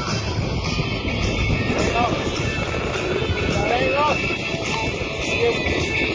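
Music track with a regular beat, with a voice briefly heard in it.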